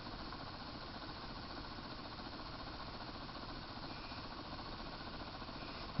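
Electrostatic corona motor running under load from a spinning ring magnet and pickup coil, giving a steady, faint hissing sound, the hiss of high-voltage corona discharge at its blades.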